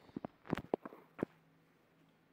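Handling noise from a phone camera: a quick run of about half a dozen light knocks and taps, all within the first second and a half.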